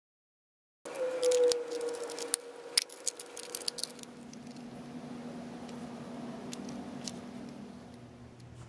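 Small clicks and light rattles of a plastic Tic Tac box and metal key ring being handled, thickest in the first few seconds, over a steady low hum.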